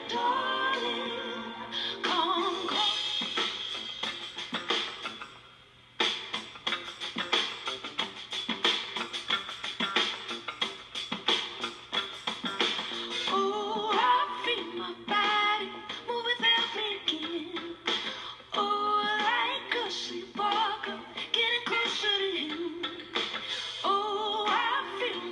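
Live band music heard through a television's speaker: a female lead singer over electric guitar and drum kit. The music drops away briefly about five seconds in, then the full band with drums comes back in hard at about six seconds.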